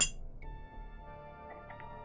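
A single sharp clink, a drinking cup set down on the desk, right at the start, then soft ambient background music with long held tones.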